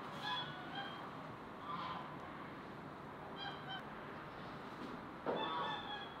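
Domestic white geese honking: a series of short calls, with the loudest and longest honk near the end.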